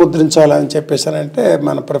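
A man speaking in Telugu into a clip-on microphone, continuous talk with no other sound.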